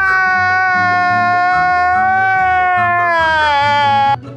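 A man's long, high wailing cry held on one drawn-out note that sags in pitch near the end, over background music with a bass line.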